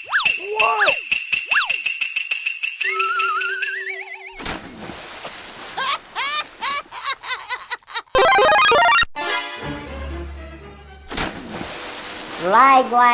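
Cartoon sound effects over music: a held high tone with quick springy pitch glides, then a rising warbling whistle and a run of short chirps, and a loud sudden burst about eight seconds in.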